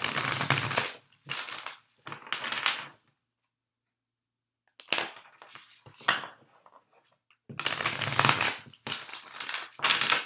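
A deck of oracle cards (the Crystal Mandala deck) being shuffled by hand: several short rustling bursts, with a pause of nearly two seconds in the middle.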